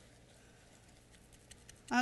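Quiet room tone with a few faint soft clicks near the end, from hands working a paper towel inside a raw chicken's cavity; a woman says "Okay" right at the close.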